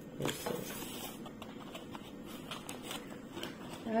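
Hand brushing and tapping on a plastic-wrapped cardboard box: faint crinkling of the plastic film with a few light taps, the clearest about a quarter second in.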